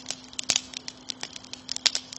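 Crackling sound effect: sharp, irregular clicks and snaps over a faint steady hum.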